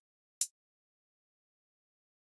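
A single short, crisp closed hi-hat hit from Logic Pro's Drummer trap kit, sounded as hi-hat notes are clicked in the piano roll. It comes about half a second in, with digital silence after it.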